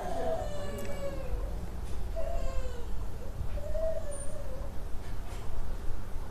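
Three drawn-out, wavering high-pitched calls in the background, the first the longest, over a steady low hum.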